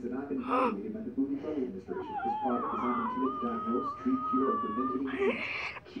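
Talking, with a high-pitched wavering wail from a child's voice over it, starting about two seconds in and held for about three seconds.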